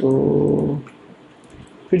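Speech: a man's voice drawing out one word for most of a second, then a pause with a few faint clicks before he speaks again.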